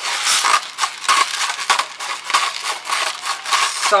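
Hand-twisted pepper mill grinding peppercorns: a quick, even run of crunching grinds, about three a second.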